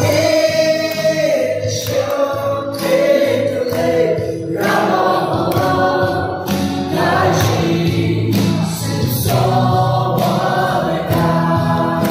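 A group of young voices singing a Mao Naga pop song together, with hand clapping keeping time.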